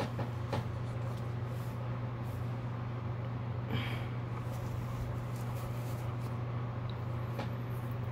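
A steady low hum, with a faint brief rustle about four seconds in.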